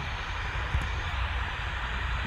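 Steady room tone: an even hiss with a low rumble beneath, no speech, and one faint tick about three-quarters of a second in.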